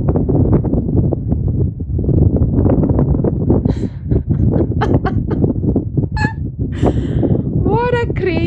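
Wind buffeting the microphone, a loud rough rumble that keeps fluttering. Near the end a brief high-pitched voice calls out over it.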